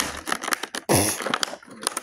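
Cardboard toy box and its plastic contents being handled as a plastic item is pulled out: a run of clicks and knocks, with a louder rustling scrape about a second in.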